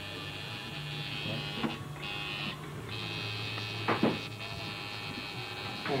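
Coil tattoo machine buzzing steadily as the needle works into the skin, with a brief break in its buzz midway. There are a couple of short knocks, the louder one about four seconds in.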